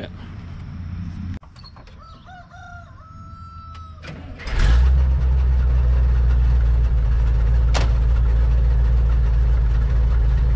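A rooster crows in the background, then about halfway through the side-loader log truck's engine starts suddenly and settles into a steady, loud idle.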